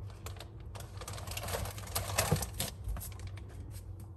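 A clear plastic zip-top bag crinkling as it is handled: a quick run of small crackles, busiest around the middle.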